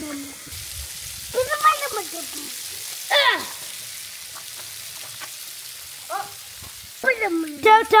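Water hissing steadily as it sprays from a bundle of water-balloon fill straws fed from an outdoor spigot, while the balloons fill. Young children's high voices call out briefly several times, most near the end.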